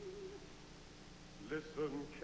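Operetta soundtrack: a held, wavering sung note fades out, then after a quiet pause come two short hooting notes near the end.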